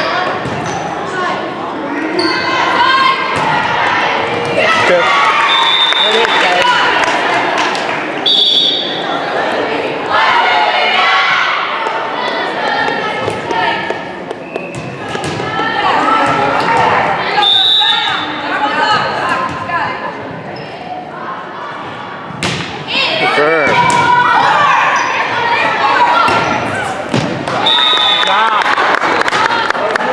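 Indoor volleyball play in an echoing gym: thuds of the volleyball being hit and bouncing, several times, amid the calls and shouts of players and spectators.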